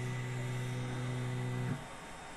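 Stepper motors of a Longer 3D printer driving the axes at the start of its automatic bed-leveling routine: a steady low hum with overtones that cuts off about a second and a half in.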